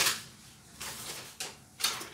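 A long paper shop receipt being unfolded and handled, rustling and crackling a few times, sharpest near the end.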